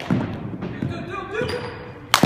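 A few dull thuds of baseballs bouncing on a hardwood gym floor inside a netted batting cage.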